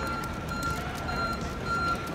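Electronic warning beeper sounding a steady high beep about twice a second, over general street noise.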